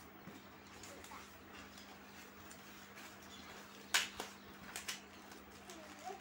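Plastic courier packet being handled: faint rustling with a few sharp crinkles about four seconds in, the first the loudest, over a steady low hum.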